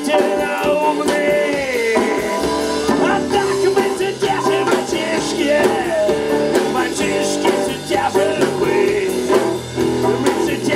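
Live rock band playing: electric guitar, bass guitar and drums, heard through the PA. A long held note slides down in pitch about two seconds in, over a steady bass line and drum beat.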